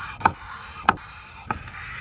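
Knife cutting slices from a seared, cross-hatched duck breast on a wooden cutting board: three short, sharp cuts about two-thirds of a second apart.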